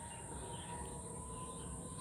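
Faint background ambience during a pause in speech: a low, steady hiss with a thin high-pitched tone running through it.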